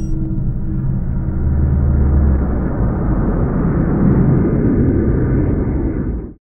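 Intro sound effect: a loud, steady rumbling noise over a low drone, cutting off suddenly at the end.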